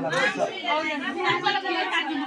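Crowd chatter: several people talking at once in a crowded room.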